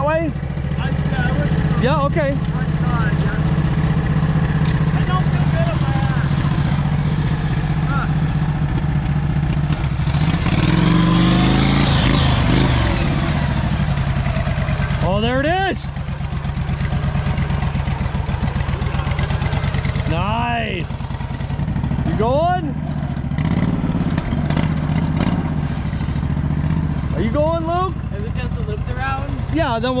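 Lifted garden tractor's engine running steadily under load as it crawls up a steep rock slab, working harder and louder for a few seconds in the middle of the climb. Short shouts from onlookers break in several times.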